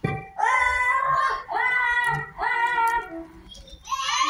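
A child's high voice sings three long drawn-out notes, each about a second, sliding slightly down in pitch, with a fourth starting just at the end.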